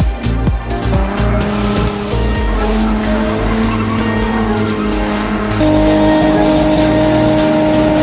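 Car engine held at high revs with tyre squeal and skidding, as in a burnout, mixed with music. The held pitch steps up about two-thirds of the way in.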